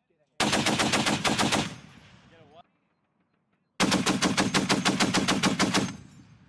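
M2 .50-caliber heavy machine gun firing two bursts of automatic fire at about eight shots a second: the first a little over a second long, the second, about three seconds in, about two seconds long. Each burst trails off in echo.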